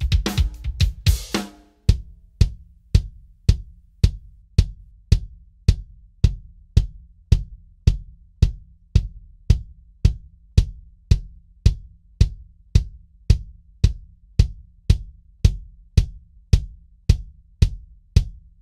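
A drum kit groove with a lightweight Lowboy custom wood beater on the bass drum for about the first two seconds. Then the bass drum alone, heard through its kick mics only and unmixed, struck by a Lowboy wool-headed beater and later the standard wood beater. The strokes are single and steady, about two a second.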